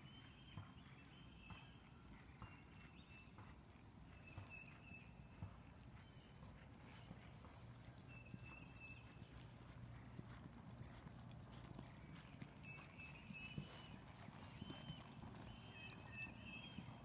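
Faint hoofbeats of a horse trotting on soft arena dirt, heard from a distance.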